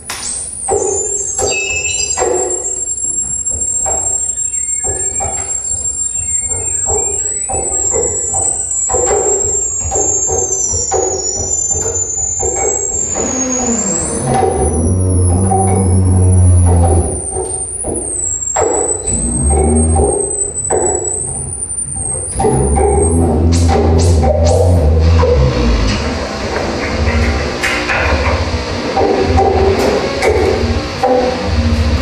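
Live experimental electronic noise music from laptop and tabletop electronics. A high, thin whistling tone wavers and glides for the first twenty-odd seconds over a scatter of crackling clicks. Heavy low pulses come in about halfway through, and the texture thickens into dense noise near the end.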